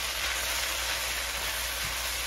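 Chopped greens and onions sizzling in a hot skillet with a steady hiss as they are stirred with a wooden spatula.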